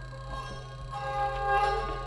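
Free-improvised music from laptop electronics and a banjo played with a bow: several sustained ringing tones over a steady low drone, with a new tone entering about a second in.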